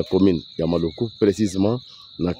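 Steady high-pitched insect trill under a man's voice speaking. The voice stops about one and a half seconds in.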